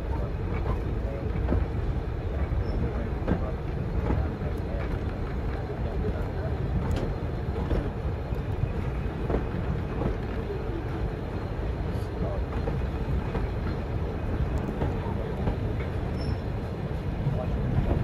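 Passenger carriage running on rails: a steady low rumble with scattered faint clicks from the wheels.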